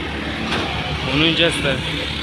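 Street traffic with motorcycle and auto-rickshaw engines running, a steady rumble and hiss, with a voice speaking briefly about a second in.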